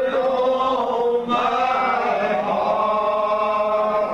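Congregation singing a lined-out hymn without accompaniment, in the slow, drawn-out Primitive Baptist style: each note is held long, with a move to a new note about a second in.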